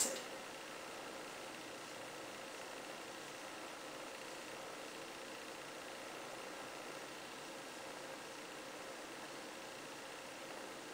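Faint, steady room tone: an even hiss with a faint steady hum, unchanging throughout.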